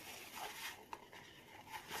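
Faint scraping and rustling as a plastic mixing bowl is wiped out over a paper cup to clear the leftover resin, with a small click about a second in.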